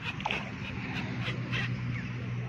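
Short high animal calls repeated several times, over a steady low hum.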